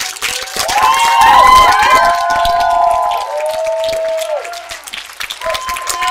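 Theatre audience applauding, with cheering and whooping voices rising and falling over the clapping, swelling about a second in: the ovation at the end of a show.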